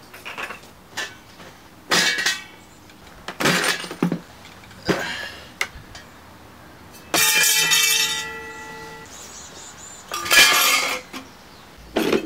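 Pieces of scrap brass and copper clanking as they are set down and dropped onto a pile, a few separate clatters several seconds apart. About seven seconds in, one metal piece rings on for a couple of seconds after it lands.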